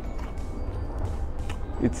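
Soft background music, with faint crunches of a crispy chocolate churro being chewed.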